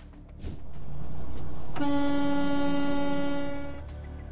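A vehicle horn held in one long steady blast of about two seconds, starting nearly two seconds in, over a rush of noise.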